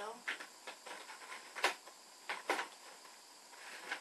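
Small handling sounds: a few sharp clicks and taps, about five in all, as a cardboard advent calendar and a small plastic tube are handled, over a faint steady hiss.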